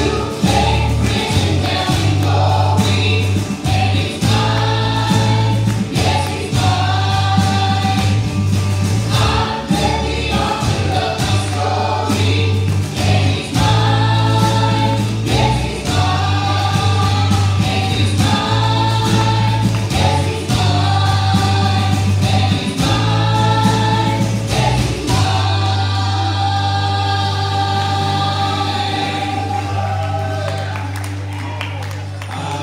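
A live church worship band playing a gospel song: several voices singing together in harmony over acoustic and electric guitars and a steady bass line. Near the end the voices settle on one long held chord.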